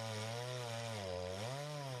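Chainsaw running under load as it cuts through a log for firewood, its engine pitch steady, dipping briefly about one and a half seconds in and then picking back up.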